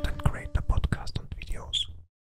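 Intro sound logo closing with a whispered voice over a rapid run of sharp clicks and swishes, ending in a short bright chirp and then cutting off suddenly.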